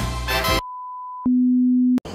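Intro music ends about half a second in, followed by a steady high-pitched test tone and then a louder, lower steady tone, like a broadcast test signal, which cuts off abruptly.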